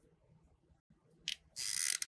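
Trigger of a hot glue gun squeezed near the end, its stick-feed mechanism rasping and ratcheting briefly as glue is pushed out.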